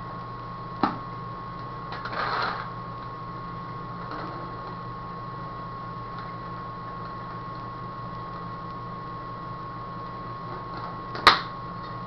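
Plastic paintball pod and hopper being handled while paintballs are refilled into the hopper: a click about a second in, a short rattle around two seconds, and a sharp snap near the end, the loudest sound. Underneath runs a steady hum with a thin high whine.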